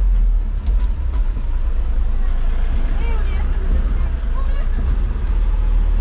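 Steady low rumble of a vehicle on the move, with road noise, and faint voices briefly in the background about halfway through.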